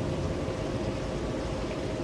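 Steady background rumble with a faint, even hum, and no distinct events.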